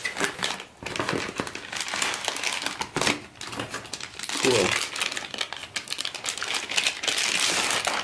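Plastic packaging and bubble wrap crinkling and crackling in irregular bursts as a new 3.5-inch hard drive is unwrapped by hand.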